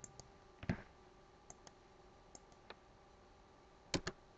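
Light, scattered clicks of a computer mouse and keyboard, about a dozen in all. A heavier knock comes a little under a second in and a loud double click near the end. A faint steady hum runs underneath.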